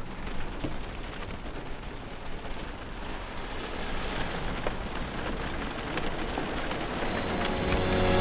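Rain falling on a car's roof and windows, heard from inside the car: a steady hiss with scattered drop ticks, growing slowly louder.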